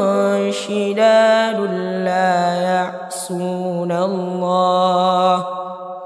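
A solo young male voice chanting Quran recitation in a melodic tajwid style, with long held notes and ornamented turns in pitch. The voice stops about five and a half seconds in, and an echo fades away after it.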